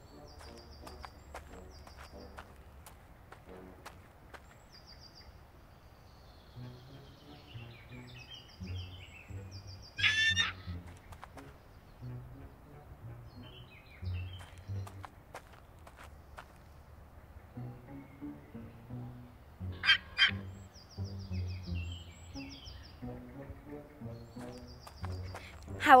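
A winged dinosaur's squawking call, heard twice about ten seconds apart and once more, louder, at the very end, over soft background music with low stepped notes and faint bird chirps.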